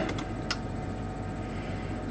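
A single computer mouse click about half a second in, over a steady low background hum.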